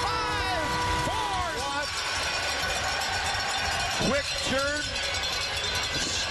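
Arena goal horn sounding a steady chord after a home goal, cutting off about two seconds in, over a noisy cheering crowd.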